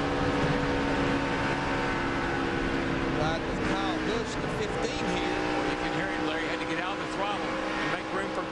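Onboard sound of a NASCAR Craftsman Truck Series race truck's V8 engine running steadily at high revs at racing speed.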